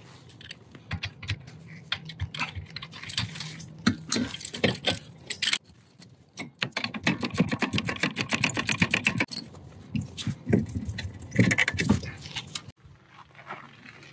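Socket ratchet clicking in quick runs as brake caliper bolts are backed out, with metal tool clinks in between; the longest, fastest run of clicks comes just past the middle.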